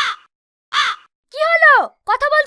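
A crow cawing twice, short harsh calls about a second apart, followed by a drawn-out falling vocal syllable from a voice.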